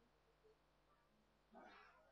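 Near-silent room tone with a faint steady hum. About one and a half seconds in, a short faint voice-like sound begins: someone in the room starting to speak.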